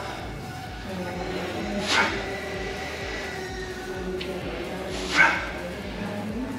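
A man's effortful grunts, twice, about three seconds apart, as he pushes repetitions on an EGYM leg machine, over a steady hum.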